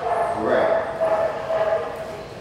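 A dog whining in one long, steady note that starts about half a second in and lasts over a second.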